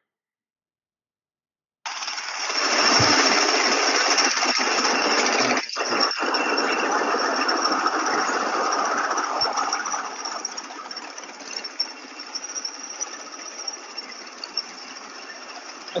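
Recording of the Tomorrowland Speedway ride cars' small gasoline engines running together, a steady rattling engine noise that sounds like construction. It cuts in about two seconds in, swells over the next second, and fades gradually in the second half.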